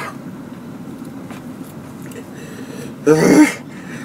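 A man clears his throat once, harshly, about three seconds in, his mouth burning from an extremely spicy curry.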